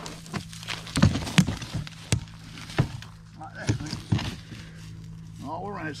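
A large broken piece of the old Unocal 76 ball's curved shell being handled and set down on a metal ring frame, giving a few sharp cracks and knocks about one, one and a half, two and three seconds in; it sounds like it is cracking as it is moved.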